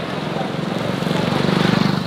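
A small two-wheeler's engine running while under way, with wind rushing over the microphone; it grows louder in the second half.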